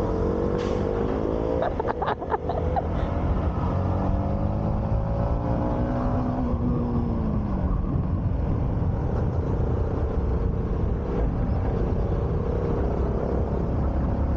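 Single-cylinder sport motorcycle engine pulling up through the revs as the bike speeds up, then dropping in pitch about six seconds in as it eases off, and running steadily after that.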